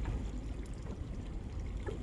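Steady low rumble of wind and water around a small boat on open water.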